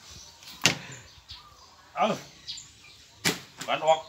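Two sharp knocks from a meat cleaver striking a wooden chopping block and table while beef and bone are being cut, the first under a second in and the louder one just past three seconds.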